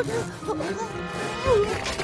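Cartoon background music with comic sound effects: a sharp hit at the start and a low thud about one and a half seconds in.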